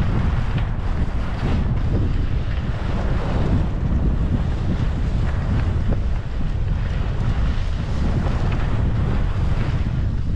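Wind buffeting the microphone of a camera carried by a skier moving downhill, a loud steady rumble, with a hiss of skis sliding on snow underneath.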